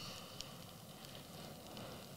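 Quiet room tone in a pause in speech: a faint, steady hiss, with one small click about half a second in.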